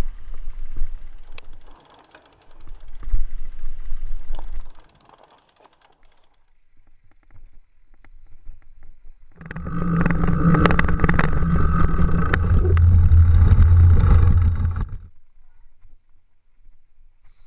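A fat bike ridden over rock and dirt trail, heard through a helmet camera: tyre rumble and rattling over the ground. It goes quieter for a few seconds in the middle, then comes back louder with a steady hum, dropping away near the end.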